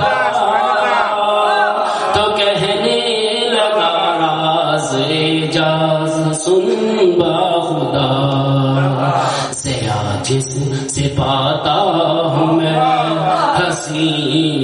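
A man chanting devotional verse solo in a melodic, sing-song recitation with long held notes, amplified through a handheld microphone.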